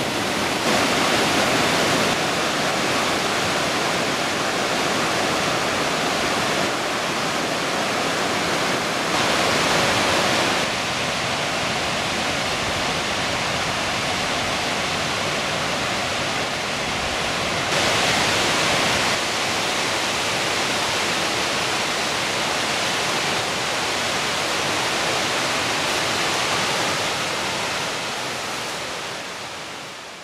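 Creek water rushing steadily over rock cascades and a waterfall, a constant rushing roar that shifts in loudness a few times and fades out near the end.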